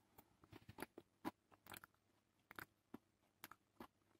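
Faint close-up mouth sounds of a person chewing a mouthful of pasta: irregular small wet clicks and smacks, about a dozen across the few seconds.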